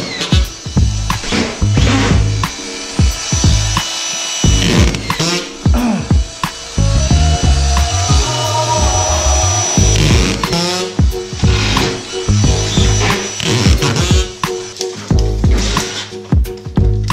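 Background music throughout, with a drywall screw gun whirring in short bursts as it drives screws into drywall; its whine rises and falls twice.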